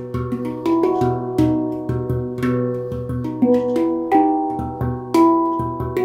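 Handpan played with the hands: a continuous run of struck steel notes, two or three a second, each ringing on and overlapping the next, with a deep low note sounding again and again beneath the higher ones.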